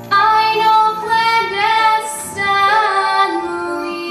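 A young girl's solo singing voice over musical accompaniment: several short sung phrases, then a long held note near the end.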